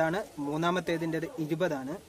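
Speech only: a man talking in Malayalam.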